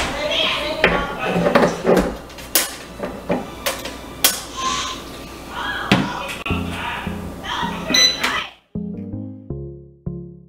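Clicks and knocks of a bread machine being loaded, its pan set in and its lid shut, over children's voices in the background. Near the end this cuts abruptly to electronic background music with a beat.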